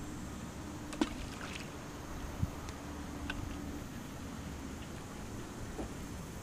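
Steady low outdoor rumble with a faint hum through the first few seconds, and two short knocks, one about a second in and a duller one about two and a half seconds in.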